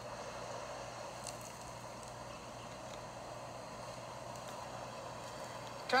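Steady, featureless outdoor background noise played back through a phone's small speaker, with a faint low hum underneath.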